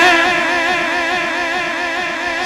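A man's chanting voice holds one long note with a wavering pitch at the end of a line of a chanted refrain, slowly fading.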